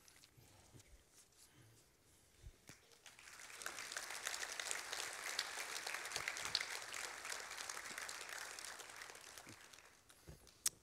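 A few faint knocks, then a congregation applauding from about three seconds in, building quickly and dying away near the end.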